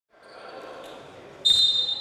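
Faint murmur of a basketball hall, then about one and a half seconds in a referee's whistle sounds one steady high blast.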